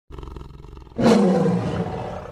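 Monster roar sound effect. A low, pulsing growl breaks into a loud roar about a second in, which then fades.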